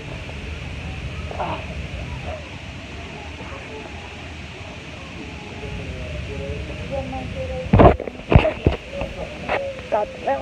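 Steady hum of a crowded waiting area with faint background voices, then a burst of loud knocks and rustles about eight seconds in, with a few more near the end, as the phone is handled and moved.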